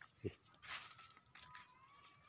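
Near silence, with a faint thin whine in the second half.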